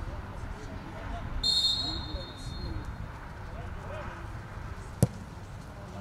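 Referee's whistle, one steady blast of about a second, signalling a free kick, then the single sharp thud of the ball being struck about five seconds in. Faint shouts of players and wind rumble on the microphone run underneath.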